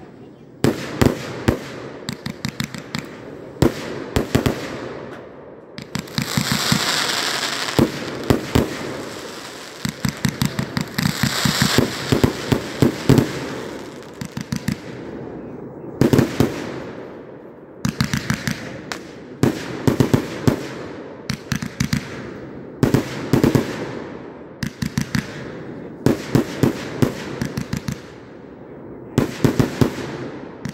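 A 309-shot consumer firework cake firing: quick clusters of sharp reports from the launches and aerial bursts, a fresh volley every second or two. Twice in the first half, a longer spell of hissing runs under the reports.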